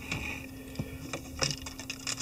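A few faint, scattered clicks and taps of small tools or materials being handled at a fly-tying bench, over a low steady hum.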